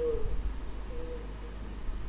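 A man's voice drawing out a low vowel at the start, with a brief hum about a second in, over a steady low background hum.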